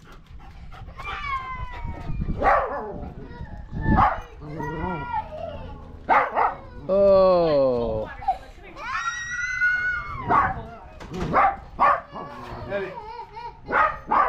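A dog whining and yelping: several long calls that slide up and down in pitch, among short sharp ones. Voices are heard in the background.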